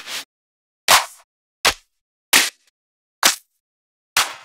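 Electronic clap and snare one-shot samples previewed one after another: four short, sharp hits under a second apart, with silence between.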